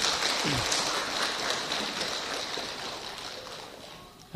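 An audience applauding, a dense patter of many hands clapping that fades away gradually over a few seconds.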